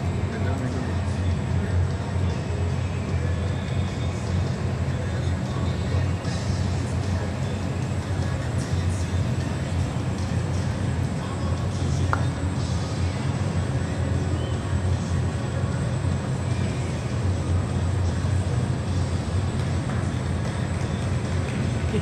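Steady low rumble of indoor arena background noise, even throughout, with no clear hoofbeats or other distinct events.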